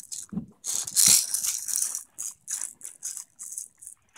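A baby's red plastic ball rattle shaken in small hands: a long burst of rattling about a second in, then a run of short, quick shakes.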